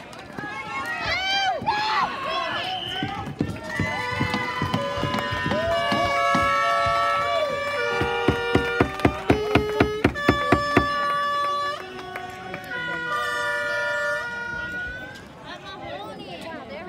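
Voices at first, then a string of held horn-like notes that step up and down in pitch, with a quick run of even claps or beats, about three a second, in the middle.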